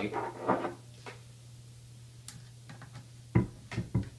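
Hand tools being handled on a tabletop: a few faint clicks, then one sharp knock about three and a half seconds in, as a ratchet and socket extension are picked up.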